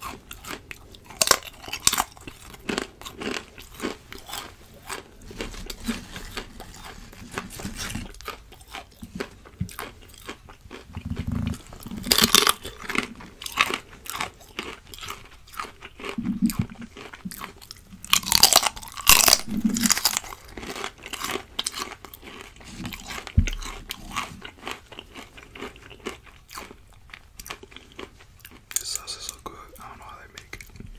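Close-miked crunching bites and chewing of crisp fried plantain chips, a dense run of short crackles, with louder clusters of bites about twelve and nineteen seconds in.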